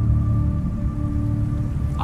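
A low, sustained musical drone over a steady rushing noise, like water or wind.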